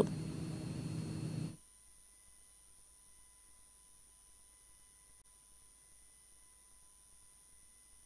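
Faint hum and hiss that cuts off suddenly about a second and a half in, leaving near silence.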